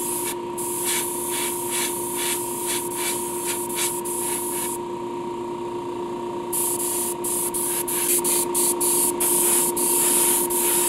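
Airbrush spraying paint in short bursts, its air hiss cut off again and again as the trigger is released, with a pause of about two seconds in the middle. A steady hum runs underneath.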